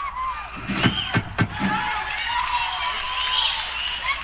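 Concert audience cheering and whooping in a live recording, with scattered shouts throughout. Three or four sharp thumps about a second in are the loudest moments.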